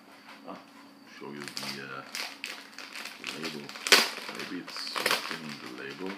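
A record sleeve crinkling and crackling as a vinyl LP is handled, in sharp bursts with the loudest about four seconds in. A man murmurs low between the crackles.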